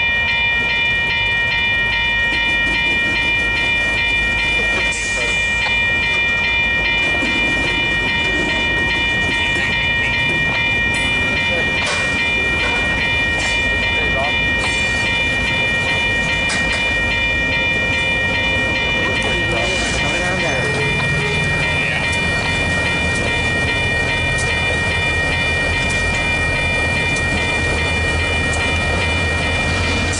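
Level-crossing warning bell ringing steadily over the low rumble of a CN diesel locomotive moving across the crossing at switching speed.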